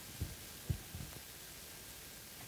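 Faint steady hiss of room tone with three soft low thumps in the first second or so.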